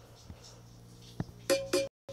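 Faint room noise, then about one and a half seconds in the soundtrack of a TV channel ident starts: a sudden loud ringing hit with sharp clicks, broken off briefly just before the end.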